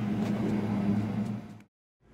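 A steady low mechanical hum with a faint hiss, like a motor or engine running, fading and then cutting off abruptly to silence near the end.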